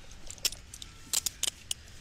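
Steel handcuffs being ratcheted closed on a prone person's wrists: a quick series of sharp metallic clicks and jangles.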